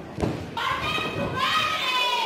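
A thud on the wrestling ring, then from about half a second in a high-pitched voice shouting, drawn out for well over a second.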